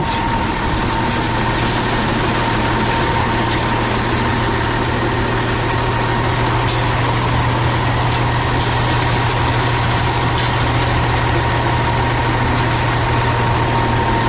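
Concrete mixer truck's diesel engine running steadily at a constant speed while its drum turns to discharge concrete down the chute, a low hum with a thin steady whine above it.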